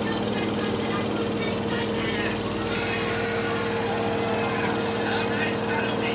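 LG direct-drive washing machine spinning at a steady speed. It gives an even running hum with two constant pitched tones over a broad whooshing noise.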